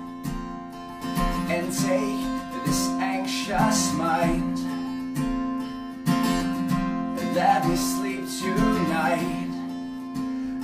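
Steel-string acoustic guitar strummed in a steady rhythm, its chords ringing between strokes. This is the instrumental passage between sung lines of the song.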